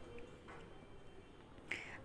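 Quiet room tone with a faint short click near the end.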